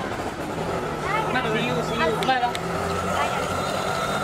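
People's voices calling out, unintelligible, over city street noise with a steady vehicle hum.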